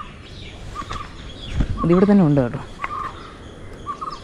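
A bird calling repeatedly outdoors, one short note about once a second, with a person's voice briefly calling out about two seconds in.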